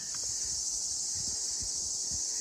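A chorus of insects, crickets or cicadas, making a steady high-pitched buzz that starts abruptly.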